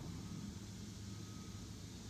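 Small electric boat motor running with a steady low hum and a faint thin whine, under a light hiss.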